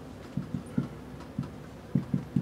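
Marker writing on a whiteboard: about five short, dull knocks as the strokes of a kanji are drawn.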